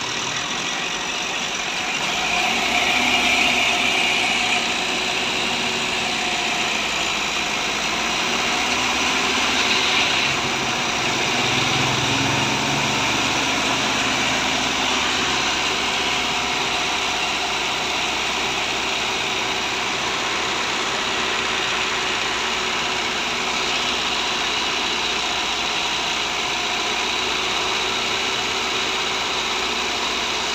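Heavy truck diesel engine running steadily at idle, a little louder for a couple of seconds near the start.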